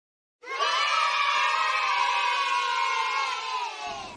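A crowd of children cheering together in one long shout that slowly falls in pitch and cuts off suddenly near the end.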